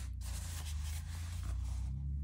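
Soft papery scraping of a notebook being slid across a tabletop, over a steady low hum.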